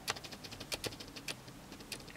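A quick, irregular run of sharp clicks and crackles, about a dozen in two seconds, starting suddenly.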